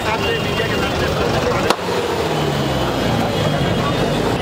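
Dense street crowd noise, many voices talking and calling at once, with a single sharp click a little under two seconds in.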